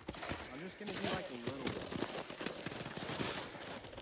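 Irregular crackling and crunching of snow, with faint voices in the background.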